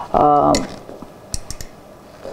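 A woman's voice speaks briefly, then three small, quick clicks come close together about a second and a half in, in a quiet pause.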